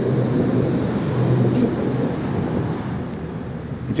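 Street traffic: a motor vehicle's engine running close by with a steady low hum, easing off slightly near the end.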